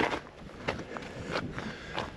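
Footsteps on a gravelly dirt track: a handful of short steps, roughly two a second.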